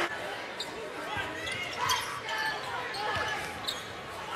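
Live basketball game sound on a hardwood court: the ball bouncing, short high sneaker squeaks and a steady crowd noise in a large arena.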